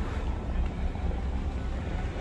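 Car engine idling close by: a steady low rumble under a light hiss.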